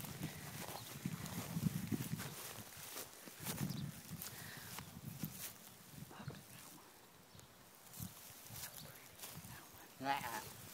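Longhorn cattle close by: low, breathy sounds around two and four seconds in, among scattered clicks and rustles.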